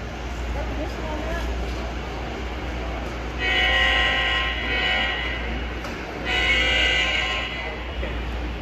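Model diesel locomotive's sound-decoder horn sounding two blasts: a longer one about three and a half seconds in and a shorter one near the end.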